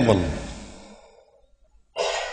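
A man's lecturing voice trailing off at the end of a phrase, fading out over about a second into a short pause of quiet.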